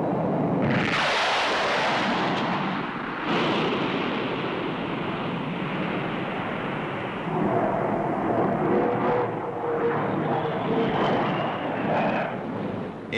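Jet roar of the Blackburn NA-39 (Buccaneer) and its two de Havilland Gyron Junior turbojets flying a display pass. The roar surges sharply about a second in, then carries on as a steady rumble, with a faint whine in the second half.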